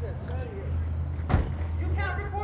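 Faint voices over a steady low hum, with one sharp knock a little past halfway.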